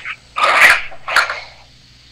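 A person's short, breathy vocal burst about half a second in, with a shorter one just after a second in.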